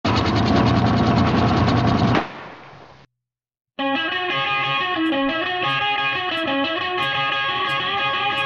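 A loud, rapid ratcheting clatter for about two seconds that fades out, then a short silence. Then a rock band's recording starts with held, sustained chords over a moving low line.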